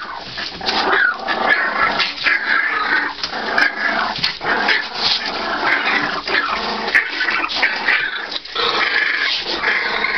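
A litter of three-week-old Johnson-type American bulldog puppies whining all at once, their calls overlapping without a break, over the rustle of shredded-paper bedding as they crawl.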